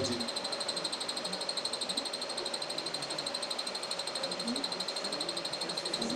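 A high trill pulsing many times a second from calling animals, running steadily with no change.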